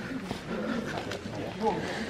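Indistinct talking: people's voices chatting in the background, too unclear to make out words.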